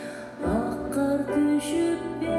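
A woman singing while accompanying herself on a Yamaha grand piano; after a short breath, a new phrase begins about half a second in.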